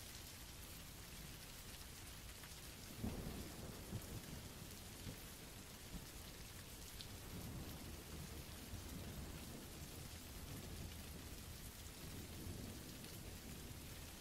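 Faint rain sound effect, a steady patter, with a low rumble of thunder about three seconds in.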